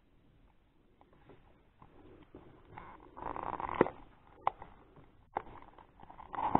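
Hands handling a hard clear plastic card case: a brief rustle about halfway through, then a few sharp plastic clicks spaced out over the last three seconds.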